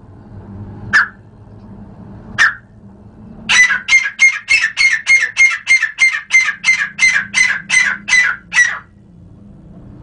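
A teetar (francolin) calling: two single sharp notes about a second and a half apart, then a loud, rapid run of about twenty evenly spaced notes, some four a second, that stops about a second before the end.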